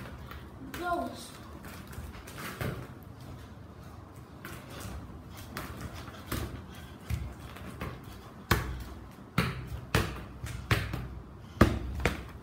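Under-inflated Adidas Predator football being touched and dribbled with bare feet on a tiled floor: irregular thuds of foot touches and floor bounces. They come closer together and harder in the second half, with the loudest just before the end.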